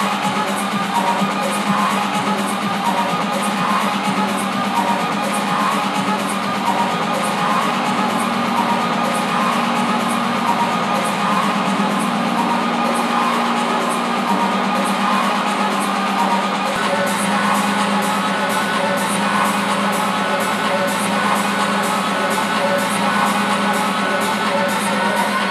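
Electronic dance music from a live DJ set played loud: a steady hi-hat beat about twice a second over a held, repeating melodic line, with the deep bass cut out. About 17 seconds in the hi-hats come in brighter.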